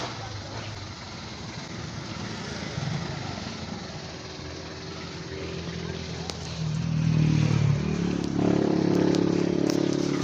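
A motor vehicle engine running, its pitch stepping up and growing louder about seven seconds in, and rising again about a second later.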